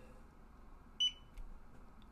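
Zebra handheld RFID reader giving one short, high beep about a second in, as its Bluetooth button is pressed to put it into pairing mode, followed by a faint click.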